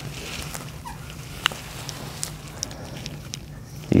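Quiet handling sounds: a few light clicks as gloved hands work a hypodermic needle and syringe, over a steady low hum.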